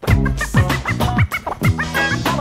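Hip hop beat with turntable scratching: short squiggly scratch sounds over deep kick drums and bass. The beat comes back in suddenly at the start after a brief drop-out.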